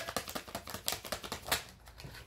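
A tarot deck being shuffled by hand: a quick, uneven run of light card clicks.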